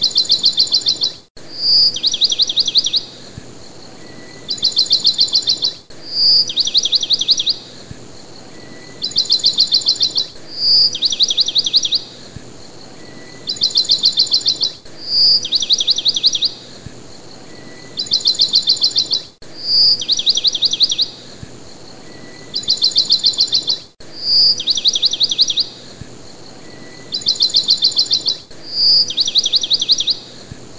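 Bird chirping on a repeating loop: bursts of rapid high trills and a short whistle recur in the same pattern about every four and a half seconds.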